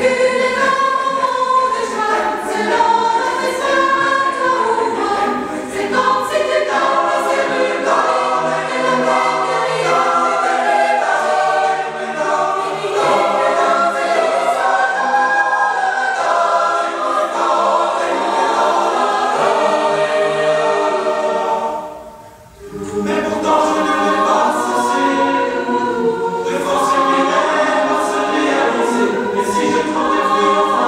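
Large choir of boys' and adult voices singing together in sustained chords. The singing breaks off briefly about three-quarters of the way through, then comes back in.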